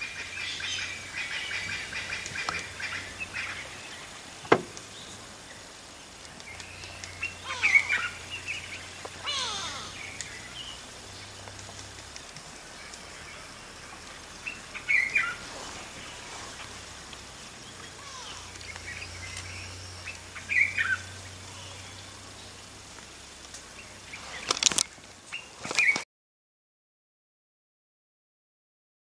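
Wild birds chirping outdoors: short, separate chirps every few seconds, with a couple of sharp clicks and a faint low hum underneath. The sound cuts off suddenly near the end.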